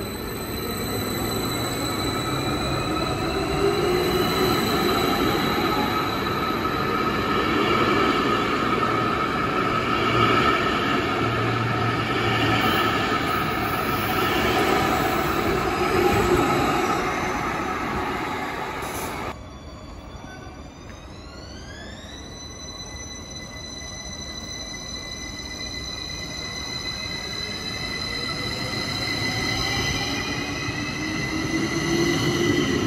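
SBB double-deck S-Bahn train running along an underground platform, its wheels rumbling and squealing. Partway through the sound drops suddenly, then an electric drive whine rises in pitch as a train pulls away, its rumble growing louder toward the end.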